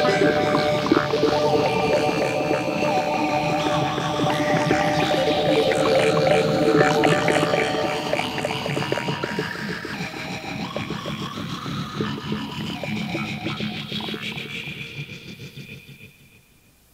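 Homemade four-track rock recording playing, the band's sound fading out gradually over the second half until it is almost gone at the end.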